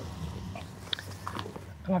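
Faint rustling of a polyester backpack's fabric, with a few small clicks, as its main compartment is opened and the contents handled.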